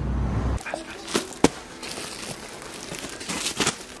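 Plastic pillow packaging crinkling as the pillows are handled, with a few sharp clicks, the loudest about one and a half seconds in. A low outdoor rumble cuts off about half a second in.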